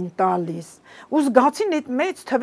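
A woman speaking Armenian in a studio interview, with a short pause about a second in.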